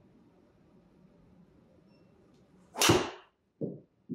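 Cobra King SpeedZone driver striking a Titleist Pro V1x golf ball on a full swing: one loud, sharp impact near the end, followed about half a second later by a softer, duller thud.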